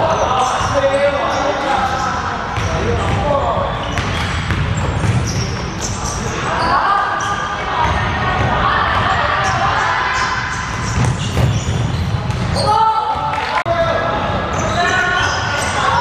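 A basketball bouncing on a wooden court during play, mixed with players' voices calling out, all echoing in a large sports hall.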